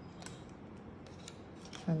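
Small pair of scissors snipping the band of a strip false eyelash: several short, light snips in quick succession.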